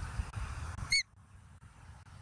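A single short, high chirp from a bald eagle about a second in: one note that rises and falls quickly. The low background rumble drops away abruptly just after it.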